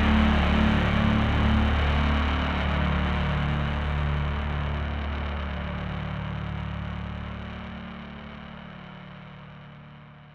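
The last chord of a rock song held and fading out: low bass and distorted guitar notes drone under a hiss of distortion. A few low notes move in the first seconds, then everything dies away steadily.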